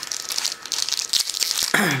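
Trading-card booster-pack wrappers crinkling as they are handled: a dense run of fine crackles.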